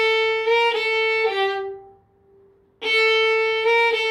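Solo violin playing a short slurred phrase twice: the note A, a low-first-finger B-flat just above it, back to A, then down to G on the D string, with a short break between the two playings.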